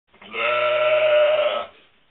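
Sheep bleating: one long, steady, low-pitched baa lasting about a second and a half.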